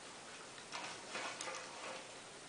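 Faint pencil scratching along a ruler on pattern paper, with the paper and ruler rustling as they are handled, in a few short strokes during the second half.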